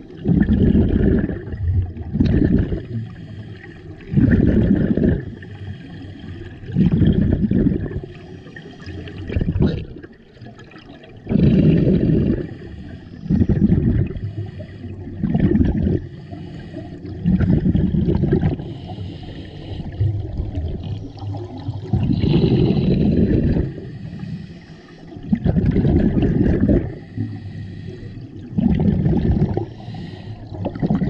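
Scuba regulator breathing underwater: exhaled bubbles rush out in bursts about every two seconds, with quieter gaps between breaths.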